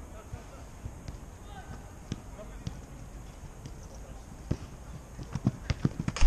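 Football players running on artificial turf, their footsteps coming closer and louder over the last second and a half, over faint distant shouts from across the pitch.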